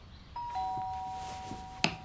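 Ding-dong doorbell chime: a higher note and then a lower one struck a moment later, both ringing on and slowly fading. A sharp click comes near the end.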